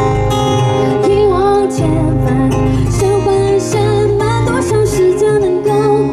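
A woman singing a slow melody over her own acoustic guitar, amplified live on stage; the voice comes in about a second in and glides up and down between held notes.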